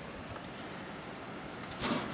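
Steady hiss and rumble of wind on the microphone during a gusty day outdoors.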